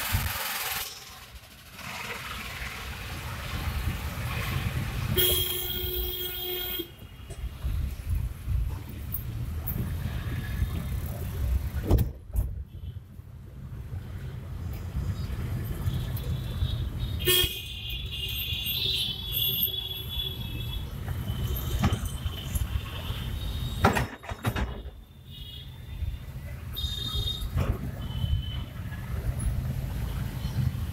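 Road traffic heard from inside a car driving across an iron bridge: a steady low rumble of the car's engine and tyres, with vehicle horns honking several times, the first and most prominent about five seconds in. Two sharp knocks stand out, about twelve seconds apart.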